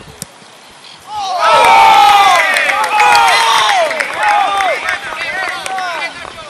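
A group of people shouting and cheering as a goal goes in. The cheer breaks out suddenly about a second in, is loudest over the next two seconds, and then trails off into scattered shouts.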